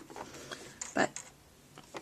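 A few faint, light clicks and rustles as hands work bias tape into a tape binding presser foot on a sewing machine that is not running. One spoken word about a second in is the loudest sound.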